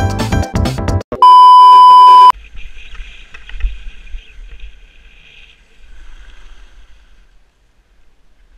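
Electronic music cuts off about a second in, followed by a loud, steady, single-pitch electronic beep lasting about a second. After the beep comes a faint low rumble of wind on an action camera's microphone, with a light hiss of skis sliding on snow.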